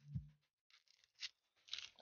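Dry, papery onion skin being peeled off by hand, crackling and tearing in three short bursts, with a dull knock near the start.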